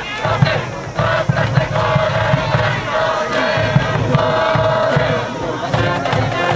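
A high school baseball cheering section chanting in unison over a steady drum beat, between brass-band songs.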